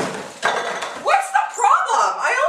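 A plastic computer monitor toppling over onto a desk: a clatter with a couple of sharp knocks in the first second, followed by voices.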